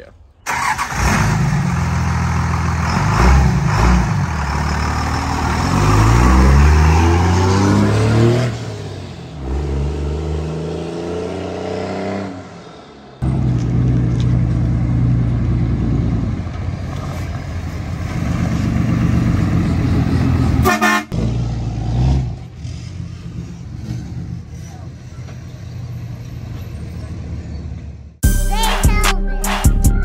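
Vehicle horns blowing long blasts over running truck engines, with pitches sliding against each other, broken by sudden cuts about 13 and 21 seconds in.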